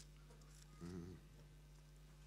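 Near silence over a steady low electrical hum, broken about a second in by one short murmured voice sound of under half a second.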